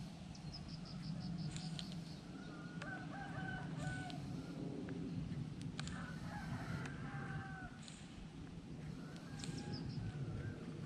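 Roosters crowing faintly, three drawn-out crows a few seconds apart.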